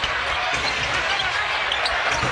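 Steady arena crowd noise over a basketball being dribbled on a hardwood court during live play.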